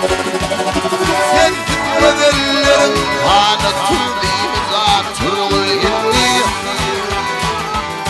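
Male vocalist singing Turkmen pop over a live band of accordion, bowed gyjak fiddle, dutar, keyboard and a fast, even drum beat.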